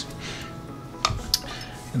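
Tap water running onto a glass bottle in a sink, with two sharp glass clinks about a second in as the bottle, heated along a burnt-string line and cooled in cold water, cracks apart.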